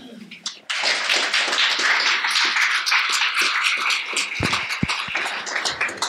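Audience applauding, starting about a second in at the close of a lecture, with many hands clapping in a dense, even patter.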